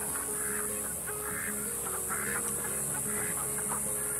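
Repeated short calls from a flock of young chickens, over soft background music with steady held notes.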